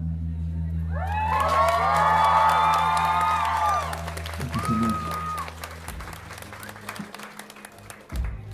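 A small club audience cheers, whoops and claps as a song ends. Under them, a low held final chord rings on and fades out about six seconds in. One voice whoops again about five seconds in.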